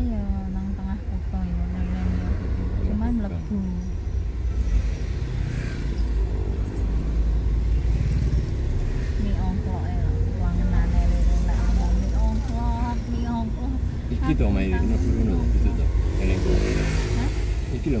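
Steady low rumble of a car driving slowly along a street, heard from inside the cabin, with voices over it.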